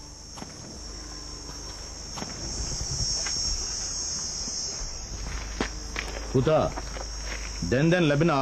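Steady high-pitched chorus of insects, growing a little louder around three seconds in, with a few faint clicks.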